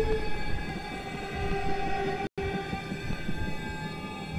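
Dark film-score drone of several dissonant tones held steadily over a low rumble, horn-like in colour, cut off by a split-second dropout a little past halfway.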